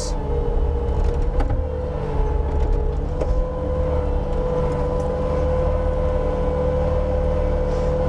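Bobcat T320 compact track loader's diesel engine running steadily at high throttle, with a steady whine over a low rumble, as the loader pivots on its tracks.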